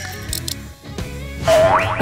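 Background comedy music, then about one and a half seconds in a loud cartoon sound effect: a wobbling tone that sweeps upward in pitch.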